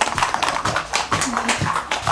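Ice cubes rattling inside a metal football-shaped cocktail shaker that is being shaken hard: a fast, uneven run of clinks and knocks.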